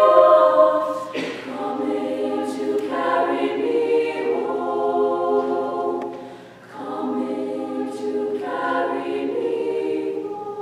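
Girls' choir singing in held chords of several voices, with a short break between phrases about six and a half seconds in.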